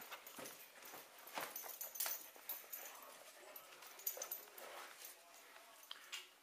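Faint, scattered clicks and taps from a puppy close to the microphone, a few sharper ones spread irregularly through several seconds.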